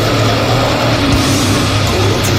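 Doom-death metal recording: heavily distorted electric guitars with bass and drums, loud and dense.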